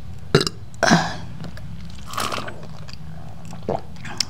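A person burps about a second in, after drinking milk, amid a few small clicks.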